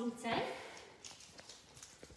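A few faint, light taps, about three of them, spaced under half a second apart.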